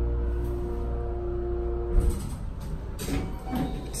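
Schindler elevator machine humming with a set of steady tones, then stopping about halfway through with a clunk as the car comes to a halt. The doors then slide open.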